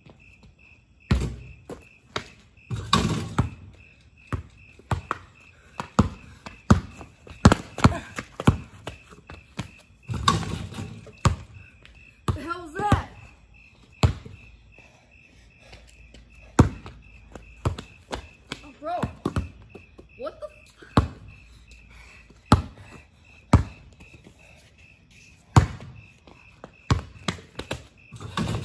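A basketball bouncing on a concrete driveway, with irregular single bounces and dribbles and a few longer, louder crashes about 3 and 10 seconds in. A steady high chirring of crickets runs underneath.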